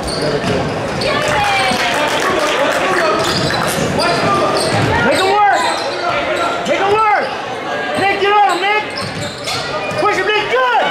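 Basketball dribbled on a hardwood gym floor, with repeated bounces and echoing shouts from players and spectators.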